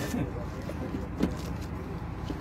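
Small boxes and items being handled by hand, with one sharp click a little over a second in over a steady low background rumble. A voice trails off at the very start.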